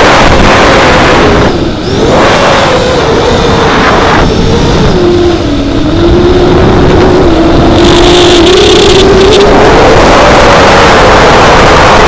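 FPV quadcopter's brushless motors and propellers (ZMX 2206-2300 motors on a 4S pack) whining, the pitch sagging in the middle and climbing again near the end as the throttle changes, over the rush of wind and prop wash on the on-board camera's microphone. The sound dips briefly about two seconds in.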